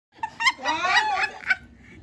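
A high-pitched, excited voice, most likely a child squealing, with a few short sharp sounds.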